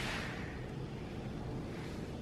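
Faint steady background noise with a low rumble and a soft hiss, with no distinct events: room tone in a pause between speech.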